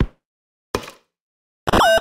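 Trap drum kit percussion one-shot samples played one after another with silence between them. There is a short click at the start, a brief knock about three-quarters of a second in, and near the end the loudest hit, which carries a ringing tone that dips in pitch and comes back up.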